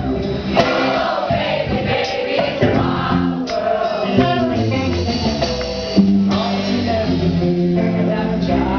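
Man singing live into a microphone, accompanied by his own strummed guitar.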